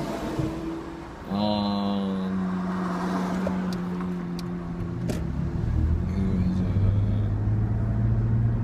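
A person humming one long, steady note for about three and a half seconds, starting about a second in, followed by a lower held hum to the end, over the steady low rumble of a car cabin.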